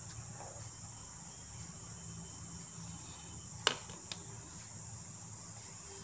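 Steady high-pitched chirring of crickets in the background. About three and a half seconds in there is one sharp clink, then a fainter one just after, as a glass cup is set down on the tray.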